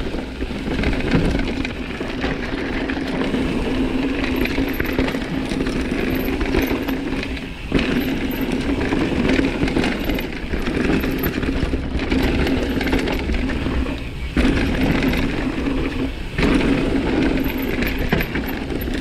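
Mountain bike on a rough dirt and gravel descent. The freehub ratchet buzzes steadily as the bike coasts, over tyre roar and rattle, and the buzz cuts out briefly a few times.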